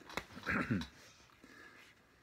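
A short click, then a brief whine-like vocal sound falling in pitch about half a second in, followed by a faint lull.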